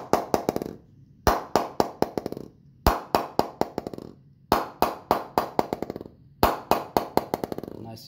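A ball dropped again and again onto the willow face of a Gray-Nicolls Prestige cricket bat, each drop bouncing several times in quickening, fading knocks. The drops come about every one and a half seconds, about five in all. This is a rebound test of the blade, showing how lively the bat is off the middle.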